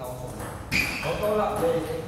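Indistinct talk of several people in a large, echoing hall, with a sharp click a little under a second in.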